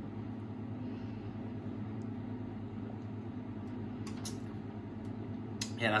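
A steady low mechanical hum, with a couple of faint clicks about four seconds in.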